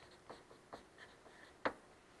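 Faint writing on a classroom board: a series of short scratching strokes, with one sharper tap about one and a half seconds in.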